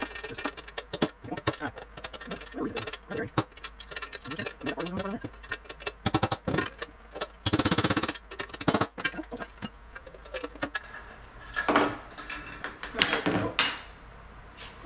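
Hammer blows on a drift, irregular and repeated, with a quick run of strikes about halfway through: a wheel bearing is being knocked out of a magnesium motorcycle wheel hub that has just been heated with a torch to free it.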